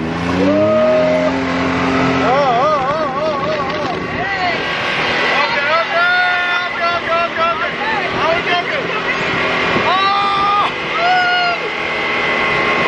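Side-by-side dune buggy's engine revving up as it accelerates, its pitch rising over the first two seconds, then running on under the riders' repeated yells and screams.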